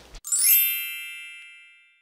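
A single bright chime struck once, then ringing out and fading away over about a second and a half.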